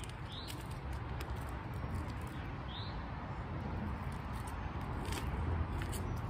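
Outdoor background: a steady low rumble, with a small bird giving two short rising chirps, about half a second in and again near three seconds.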